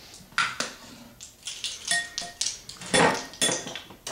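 Kitchen clatter: scattered clicks, knocks and clinks of a glass bottle and utensils on a tiled countertop while an electric hand mixer is picked up and readied over a bowl, with a brief ring about two seconds in and the loudest knocks about three seconds in.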